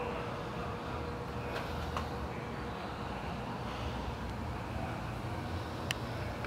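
A Yamaha Road Star 1600's air-cooled V-twin idling, a steady low rumble, with a few light clicks and a sharper one near the end.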